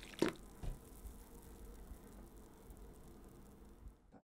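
Last drips of coffee falling from the pot into a full ceramic mug: two drops in the first second, about half a second apart, then only a faint low background.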